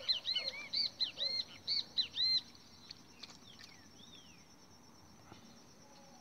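A bird calling a quick series of about eight rising-and-falling notes, about three a second, that stops after about two and a half seconds; one falling note follows about four seconds in.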